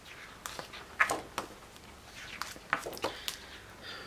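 Paper pages of a spiral-bound colouring book being turned and handled: a string of short rustles and flaps, the loudest about a second in.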